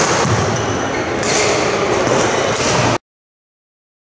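Sports hall background noise, a steady reverberant wash with a knock about a second in, cutting off suddenly into silence about three seconds in.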